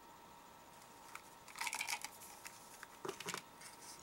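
Faint crinkling of a clear plastic wrapper being handled, in two short bursts about a second and a half in and about three seconds in, with a few light clicks between.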